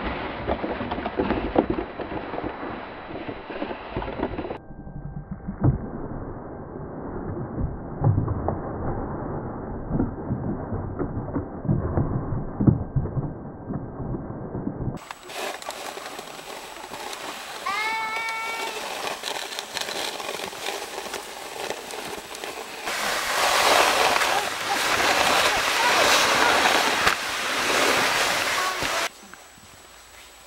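Snow crunching and scraping as plastic toy trucks are dragged and pushed through it, with small knocks and bumps; the loudest, densest scraping comes near the end as a toy bulldozer plows a heap of snow. A brief high voice rises in pitch about halfway through.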